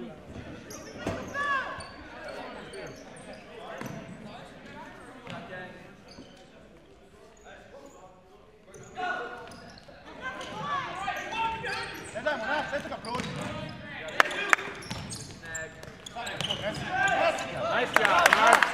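Futsal play on a hardwood gym floor: sneakers squeaking, a few sharp ball strikes about fourteen seconds in, and distant players' voices carrying in a large hall.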